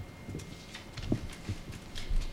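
A few light, irregular knocks and taps of things being handled on a meeting table, over low room noise; the loudest knock comes about a second in.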